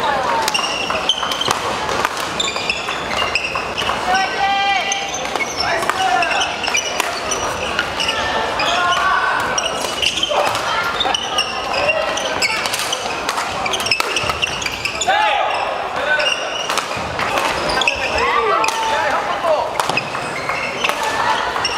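Badminton doubles rally in a large hall: repeated sharp racket hits on the shuttlecock, with sneakers squeaking on the wooden court floor and voices in the hall.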